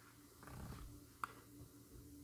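Near silence: room tone with a faint steady hum, a soft low rumble about half a second in and one small click just past the middle.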